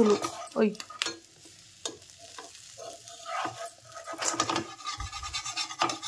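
A spatula scraping and rubbing against a nonstick tawa as it loosens the edge of an egg dosa, with faint sizzling. A short dull low thump comes about five seconds in.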